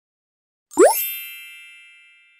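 Logo sting sound effect: about three-quarters of a second in, a short rising sweep leads into a bright chime that rings on and fades away slowly.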